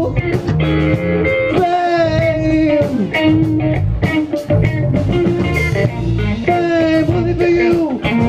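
Live rock band playing: an electric guitar plays a lead line of sustained, bending notes over bass guitar and drums.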